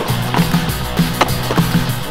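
Skateboard rolling and carving on a concrete bowl, with a few sharp knocks from the board, mixed under backing music with a steady beat.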